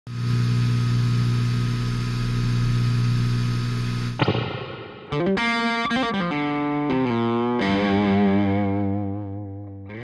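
Intro theme music on distorted electric guitar: a held chord for about four seconds, then bent notes and a long wavering note with vibrato that fades out near the end.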